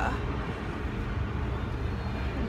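Steady low rumble of outdoor city noise, with no single clear source standing out; a brief "uh" at the very start.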